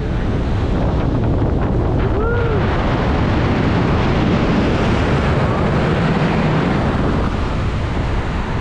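Strong wind rushing over the camera microphone as a tandem parachute canopy is pulled into a fast, steep right-hand turn.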